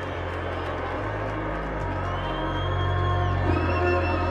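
Electronic dance music from a DJ set played over a festival sound system: long held bass notes shifting in pitch under a high synth line that glides up, holds and slides down near the end, the music getting gradually louder.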